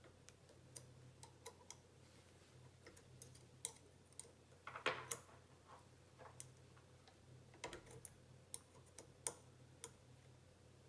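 Faint, irregular clicks and ticks of a small metal Allen key working the set screws on a ZWO EAF focuser's mounting bracket. A louder cluster of clicks comes about halfway through.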